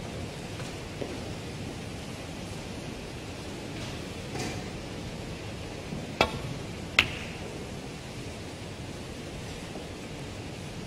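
Snooker break-off: the cue tip strikes the cue ball with a sharp click, and less than a second later the cue ball cracks into the pack of reds, over the steady hiss of the arena.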